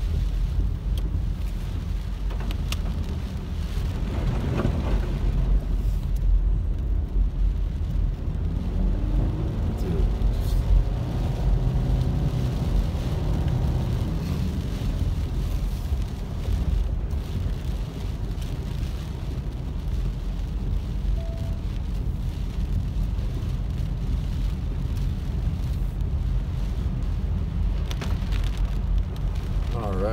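Road noise heard from inside a moving car on a rain-soaked road: a steady low rumble of tyres on wet asphalt.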